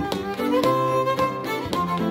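Fiddle and upright piano playing a traditional reel together: a quick stream of bowed fiddle notes over steady piano chords.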